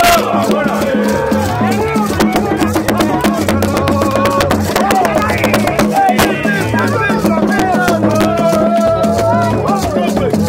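Live gagá band music in a packed crowd: shakers rattling steadily and a low repeating beat under loud group singing.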